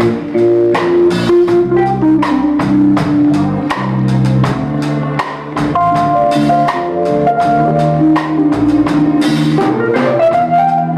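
Live jazz band playing an instrumental passage: guitar over a drum kit keeping a steady beat, with keyboard.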